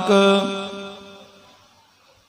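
A man's voice holding one long steady intoned note at the end of a phrase. It stops about half a second in and fades away to quiet over the next second.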